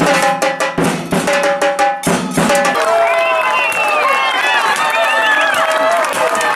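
Fans' drums beaten in a fast, even rhythm: a bass drum, a snare-type drum and a metal barrel drum that rings with a clanging tone. About two seconds in the drumming gives way to a crowd of voices shouting and cheering.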